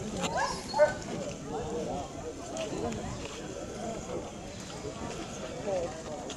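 Indistinct talking of several people runs throughout. There is one short, loud pitched call just under a second in.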